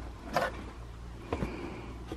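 Cardboard box being handled: a short scrape or rustle of cardboard about a third of a second in and a light knock a second later, over a low hum.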